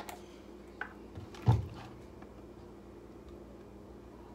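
Handling of a bottle and plastic cup: a couple of light clicks, then one loud, short, low thump about a second and a half in, over a steady low hum.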